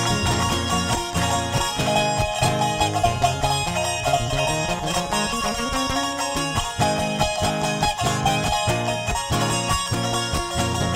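Live band playing an instrumental passage with a steady beat, a bass run climbing in pitch about halfway through.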